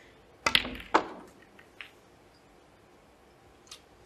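Snooker shot: the cue tip strikes the cue ball with a sharp click, and about half a second later the cue ball clicks hard against an object ball. A fainter click follows about a second later.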